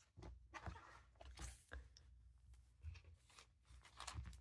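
Near silence broken by faint rustles, scrapes and taps of paper and a hardbound planner being shifted across a desk, about a dozen small handling sounds.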